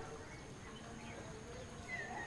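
Faint outdoor background with a steady thin high whine, and a single short, falling bird chirp right at the end.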